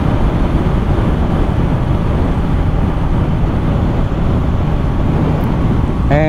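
Steady wind rush and road noise riding a 2022 Honda CB500F at about 100 km/h on a naked bike with no wind deflection, the bike's parallel-twin engine running underneath.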